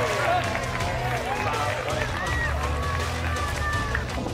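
Distant voices of hockey players calling out on the pitch, over a low rumble of wind on the microphone.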